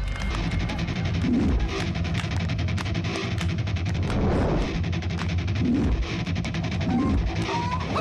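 Fast-paced film background score with guitar over a rapid, steady driving beat.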